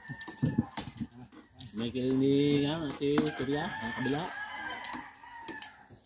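A rooster crowing once, a long drawn-out call starting about two seconds in, with sharp clinks of spoons and forks against plates and a metal wok scattered around it.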